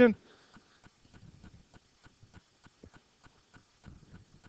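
Quiet classroom pause: faint light clicks and taps, irregular, several a second, with a brief faint murmur of voices about a second in.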